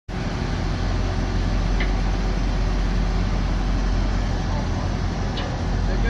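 The 2004 Chevrolet C7500 dump truck's 8.1-litre V8 gas engine idling steadily with an even, low rumble.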